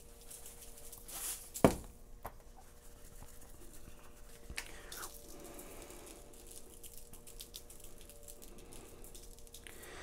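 Dry seasoning being shaken from shaker containers onto raw boneless pork ribs, soft granular pattering and handling noises. One sharp knock about two seconds in, as a container is set down on the wooden counter, over a faint steady hum.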